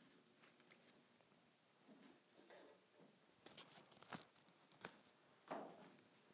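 Faint rustling and a few small clicks of fresh flowers and foliage being handled and trimmed, with a soft rustle near the end, over quiet room tone.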